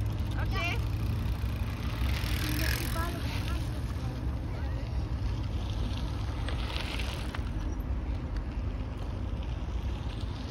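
Mountain bike tyres rolling over a packed dirt-and-gravel trail, the tyre noise swelling twice as riders pass, over a steady low rumble. Voices can be heard in the background.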